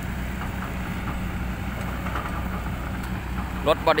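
Kobelco hydraulic excavator's diesel engine running at a steady, even pitch, with no bucket strikes or knocks.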